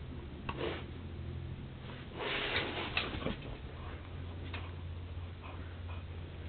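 Siberian husky chewing and tugging on a red rubber toy held in a hand: scattered clicks and scuffs of teeth on the toy, with a louder scuffing stretch a little after two seconds and a sharp click about three seconds in.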